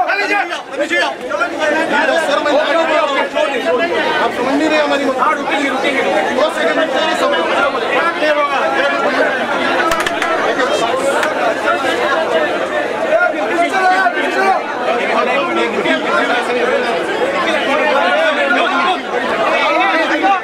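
A crowd of men all talking over one another at close range, a dense, steady babble of voices with no single speaker standing out.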